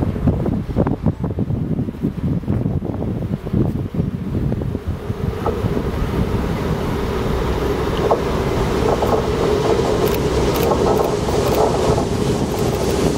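Wind buffeting the microphone, then the engine drone of two DB Cargo class 6500 diesel-electric locomotives heading a freight train, steadily growing louder from about five seconds in as the train approaches.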